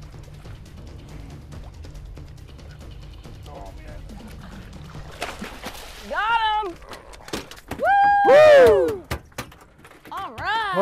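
Boat engine idling low, then a splash as a thrashing king mackerel is hauled over the side. Two loud excited whoops follow, the second the loudest, and the fish knocks against the deck as it flops.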